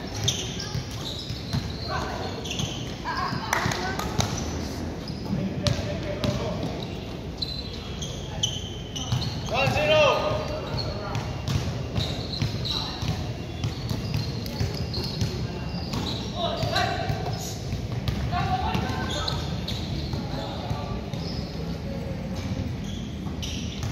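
Basketballs bouncing on a gym court, with indistinct shouts and calls from players across a large, open hall.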